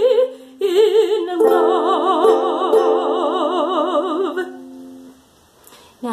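A woman singing in a classical, operatic style with wide vibrato over held accompaniment notes. She holds a long final note that stops about four and a half seconds in, and the accompaniment dies away shortly after.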